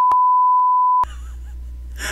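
Censor bleep: a steady, pure beep tone laid over a spoken word, cutting off about a second in.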